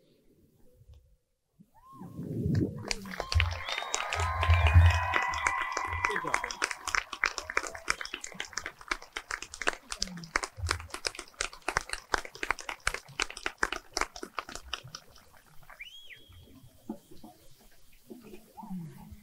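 Crowd cheering and clapping with shrill whistles, rising suddenly about two seconds in after a brief hush and thinning out over the following seconds, with one last rising whistle near the end.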